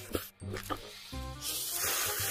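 A mouthful of ramen noodles slurped in from a spoon: a long, loud, noisy slurp that starts about one and a half seconds in, after a few short crunches of chewing on a kimbap roll. Background music plays throughout.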